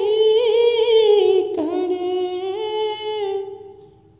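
Unaccompanied voice humming the slow melody of a devotional song in long held notes, with a short break about a second and a half in and fading out shortly before the end.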